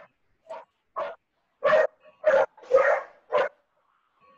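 A dog barking six times in quick succession, the first two barks fainter than the rest, heard through a video call's audio.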